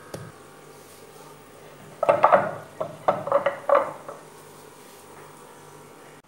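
A short cluster of clattering knocks as kitchenware is handled on a granite counter, with the blender jug being moved aside, between about two and four seconds in, over a faint steady background hum.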